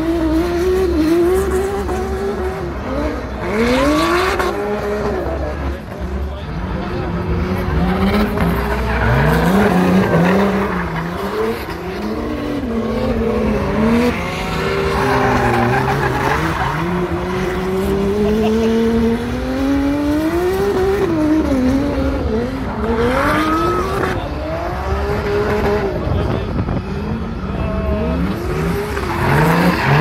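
Two turbocharged BMW S54B32 straight-six drift cars revving up and down again and again while sliding, their engine pitch rising and falling, with the tyres squealing in bursts.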